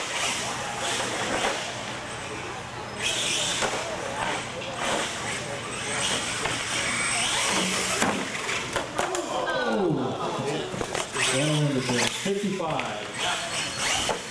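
R/C monster truck running over plywood ramps on a concrete floor: a high motor whine, tyre scrub and repeated knocks as it hits the ramps and lands. About two-thirds of the way through, onlookers' voices rise and fall over it.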